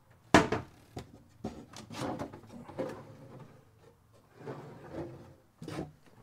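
A painted cabinet door pushed shut with one sharp knock about a third of a second in, followed by quieter knocks and handling noise, and another knock shortly before the end.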